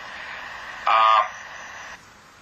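Steady hiss of a thin, tinny online-call audio line, with one short held vocal sound about a second in, most like a man's hesitant "uh".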